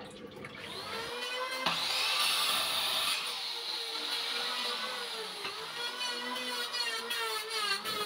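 Compound miter saw motor spinning up about a second in and running with a steady whine, blade turning free without cutting.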